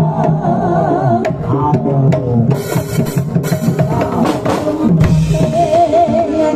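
A Javanese percussion ensemble playing: a slompret (small wooden shawm) carries a wavering, reedy melody over steady drumming on large hand drums. Bright crashes come around the middle, and the shawm's wavering line returns near the end.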